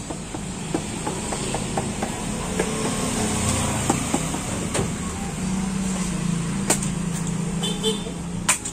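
Motor scooters passing on the street, their engine hum swelling twice over a steady traffic bed, with scattered sharp knocks of coconuts being picked up and handled.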